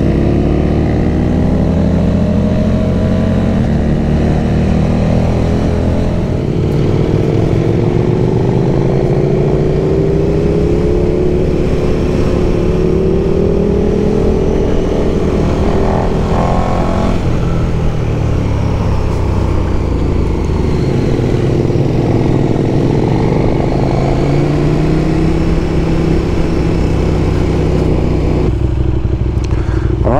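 Motorcycle engine heard from the rider's seat while riding, its pitch repeatedly rising and falling as the bike accelerates and eases off, over a steady low rush of wind and road noise.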